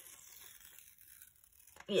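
Sellotape being peeled off a rolled paper canvas: a faint, crackly tearing noise.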